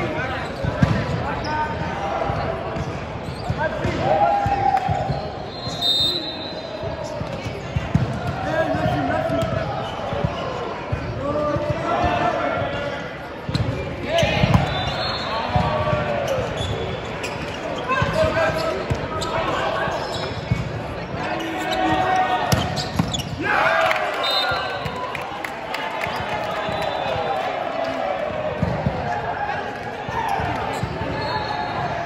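Indoor volleyball rally in a large, echoing sports hall: thuds of the ball being served, passed and hit, with players' shouts and calls throughout and ball bounces from neighbouring courts.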